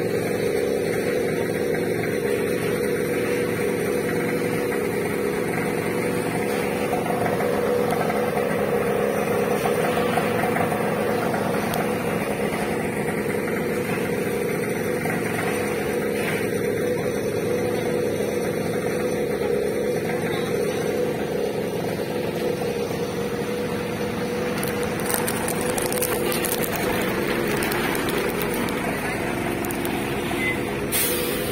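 Fire truck engine running steadily, an unbroken drone with faint voices around it.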